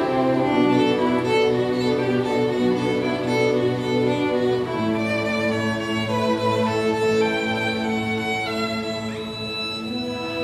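Children's string orchestra of violins, cellos and basses playing sustained bowed chords over a low bass line, with a solo violin standing out in front. The bass line shifts about halfway through, and the music grows softer near the end.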